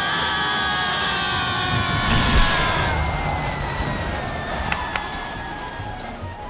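Two cartoon raccoons screaming as they fall, long screams slowly dropping in pitch and fading away. There is a dull thud about two seconds in and a couple of faint clicks near the end.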